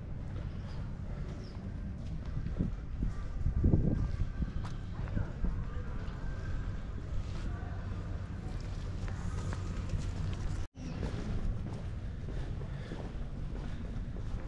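Outdoor canal-side ambience: a steady low rumble with faint distant voices and scattered light knocks, broken by a brief dropout about two-thirds of the way through.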